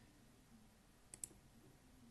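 Near silence, broken a little over a second in by two quick, faint clicks close together: a computer mouse button being clicked.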